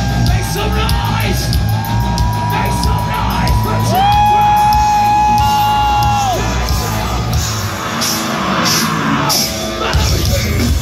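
Live metal band playing loudly through a PA, with shouted vocals over drums, bass and distorted guitars. One long held note sounds from about four seconds in to just past six.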